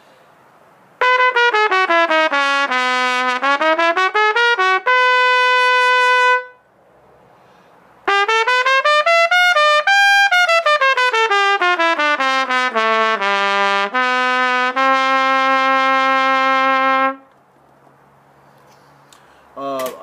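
Selmer Chorus 80J B-flat trumpet played in two quick runs of notes with a pause between. The first steps down and climbs back up to a held note; the second climbs to a high note and steps back down to a long held low note.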